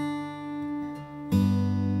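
Steel-string acoustic guitar played as a pinch, thumb and finger plucking a bass string and a treble string at the same moment. A pinched chord rings at the start, and a second, louder pinch comes a little over a second in and is left to ring.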